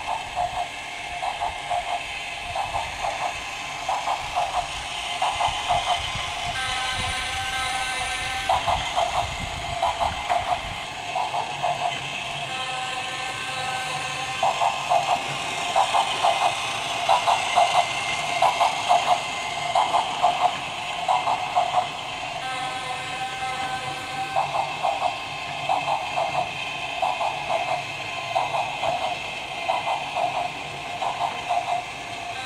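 Battery-operated toy train running around its plastic track, its small speaker playing a rhythmic electronic chugging sound. The chugging gives way three times to a held whistle-like tone, each lasting a second or two.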